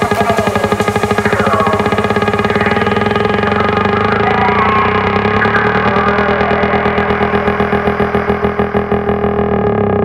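Electronic dance music in a breakdown: dense sustained synthesizer chords with a fast pulsing rhythm and no deep bass, the treble gradually filtered away.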